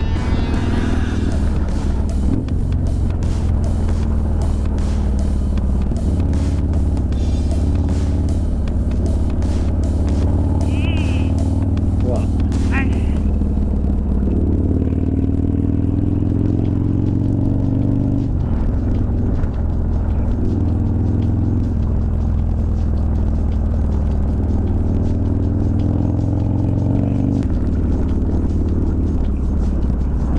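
Motorcycle engine running under way at road speed, its note shifting up and down in steps as the rider changes gear and throttle, with wind buffeting the microphone, heaviest in the first half.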